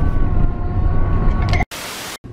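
Wind buffeting and road rumble inside a moving car with a rear window open, loud and low, with a faint steady whine over it. Near the end it cuts out abruptly for a short, hiss-like burst of noise, a title-card transition effect.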